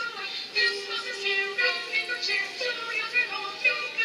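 Choir singing, amplified over the Christmas Ship's loudspeakers and heard from the shore across the water.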